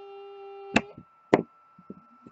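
A faint steady hum cuts off a little under a second in at a sharp click. A second sharp click follows about half a second later, then a few faint knocks: a hand handling a plastic Littlest Pet Shop toy figure.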